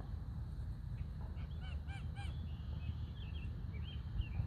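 Geese honking: a quick run of four short, arched honks about a second and a half in, followed by softer, higher calls, over a steady low rumble.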